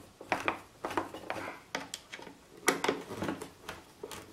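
Hand screwdriver turning wood screws into a plywood bracket: irregular small clicks and short scrapes of the driver and screws, with some handling of the wooden parts.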